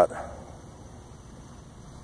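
A spoken word trails off at the start, followed by a pause holding only faint, steady background noise.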